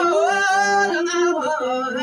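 Male azmari singing an ornamented, wavering melody over the bowed masinko, the Ethiopian one-string fiddle, which holds steady notes beneath the voice.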